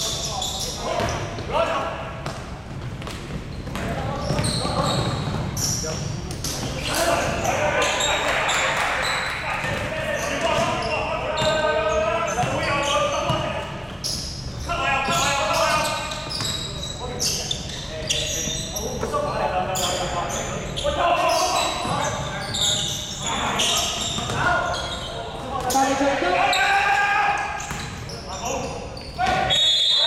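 Indoor basketball game: a basketball bouncing on the hardwood court amid players' and spectators' calls and shouts, echoing in a large gym.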